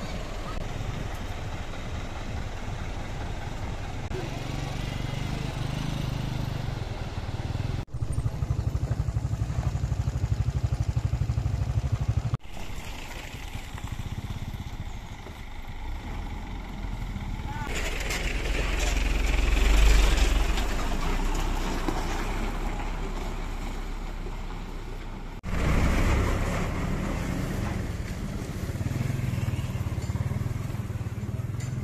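Trucks and motorcycles running along a rough dirt road, heard in several short clips cut together. The engine noise rises and falls as vehicles pass, loudest about twenty seconds in.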